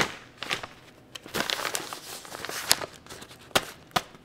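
Paper envelope being handled: crinkling, rustling paper with several sharp snaps, the sharpest about two-thirds of the way through.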